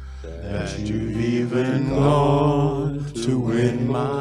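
A man singing a slow worship song with acoustic guitar accompaniment, his voice holding long, sliding notes over a steady low chord.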